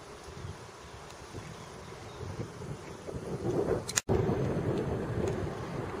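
Wind buffeting the camcorder microphone as a low, rough rumble that grows louder about three seconds in, broken by a split-second dropout just after four seconds in where the video is cut.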